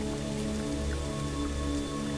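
Slow ambient music with long, steady held tones at several pitches, over an even hiss of rain.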